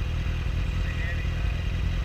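Sport-bike engines and a Corvette's V8 idling at a standstill: a steady low rumble with no revving.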